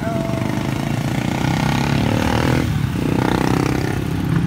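A small motorcycle engine revving close by in slow traffic. It rises in pitch until it drops off about two-thirds of the way in, then picks up again.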